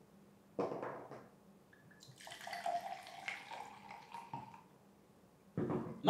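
Red wine poured from a bottle into a wine glass, a gurgling pour of about two seconds. A knock comes about half a second in, and a short click follows just after the pour.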